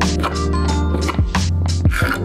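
Background music with a steady beat: regular drum strokes over held bass tones.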